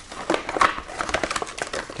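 Hard plastic engine cooling shroud of a GY6 scooter engine being swung down and worked loose by hand: a quick, irregular run of clicks, taps and light knocks of plastic against the engine.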